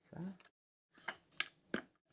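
Three sharp clicks and taps, starting about a second in, as stiff cardboard cards are handled and fitted into a wooden desk card holder.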